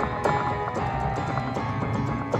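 Instrumental pop backing track playing with a steady beat and no singing.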